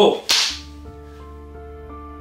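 Background music with held notes. Right at the start comes a sudden hit, followed about a third of a second later by a bright, sharp whip-like swish, an edited sound effect.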